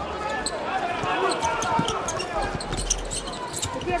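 Indoor handball game sound in a large arena: many voices shouting and calling at once, with sharp smacks of the handball bouncing on the court floor scattered throughout.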